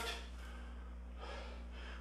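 Quiet room tone with a low steady hum and a faint breath, slightly stronger past the middle.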